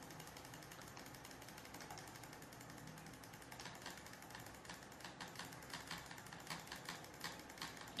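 Faint, rapid clicking of computer controls: repeated presses that shrink the selected text's font size one step at a time. The clicks grow more distinct in the second half.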